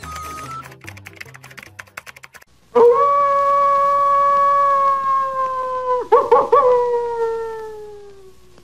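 A short music jingle with clicks ends, then a coyote howls: one long, loud howl that holds nearly level, breaks into a few quick yips about three seconds in, then slides slowly lower and fades.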